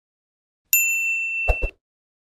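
A bright, bell-like notification ding sound effect that starts suddenly and rings for about a second, with two quick clicks near its end.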